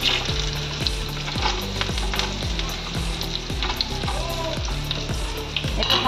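Diced potatoes sizzling as they drop into hot oil in a kadai, with a steel spatula stirring and scraping them in irregular clicks.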